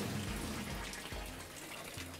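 A thin stream of water from a vivarium water feature falling and splashing into a small pool, a steady trickling that fades slightly.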